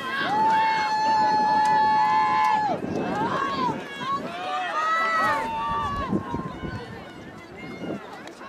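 High-pitched voices shouting from the sideline: one long held yell lasting about two and a half seconds, then several voices calling out over one another.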